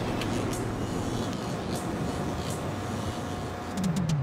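Steady city street ambience: a hum of distant traffic with a few faint ticks, and a low tone sliding downward near the end.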